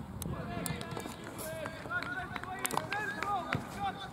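Several voices shouting and calling during a football match, with a few short, sharp knocks scattered through.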